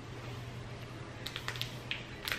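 Clear plastic bag of coloured sand crinkling as it is handled and tipped into a funnel: a few short, soft crackles in the second half, over a low steady hum.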